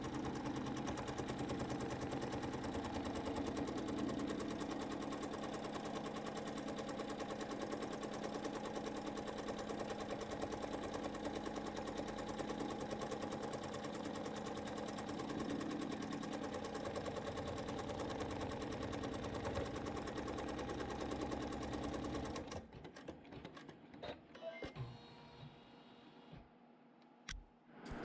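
Embroidery machine stitching steadily as it sews the backing fabric onto a quilt block in the hoop. It stops near the end, followed by a few faint clicks.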